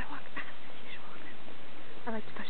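A woman's voice close to the microphone, making several short, nasal vocal sounds.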